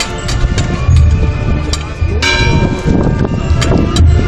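A bell is struck once about two seconds in, its ringing tones fading over about a second, over a band playing a slow processional funeral march with deep drum strokes.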